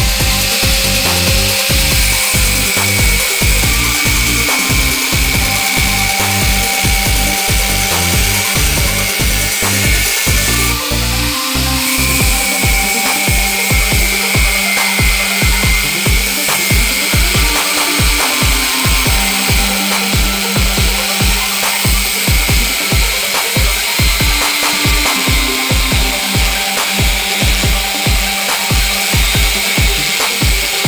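Electric angle grinder with a thin cutting disc running and cutting through a steel flat bar, a steady high whine, under background music with a steady beat.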